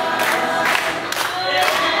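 A group of voices singing together, with sharp hand claps keeping time about twice a second, accompanying a dance.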